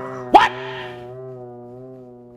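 Edited-in sound effect: a held, steady musical tone that slowly fades, with one short, loud rising squeal about a third of a second in.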